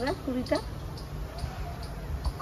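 A woman's voice says one short word at the start, then only a low, steady background rumble remains.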